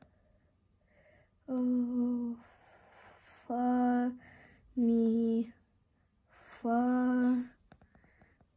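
A girl's voice singing four held notes at about the same pitch, each just under a second long and spaced a second or so apart: note names sung aloud in solfège.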